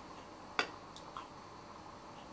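A single sharp click, then a fainter click about half a second later, over quiet room hiss.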